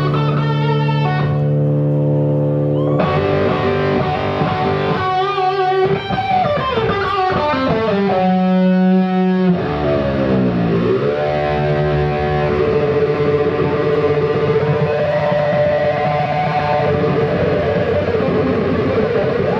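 Distorted electric guitar played live through stage amplification: long sustained notes, with the pitch swooping down about seven seconds in and dipping down and back up about ten seconds in.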